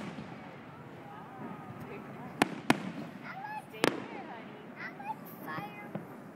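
Fireworks bursting in the finale of a display: three sharp bangs, two in quick succession about two and a half seconds in and a third about a second later.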